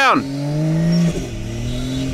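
Turbocharged Barra straight-six in a Land Cruiser revving under load while the truck is bogged in soft sand with its tyres spinning. The engine note climbs about half a second in, then drops back just after a second and holds steady. A man's shout ends right at the start.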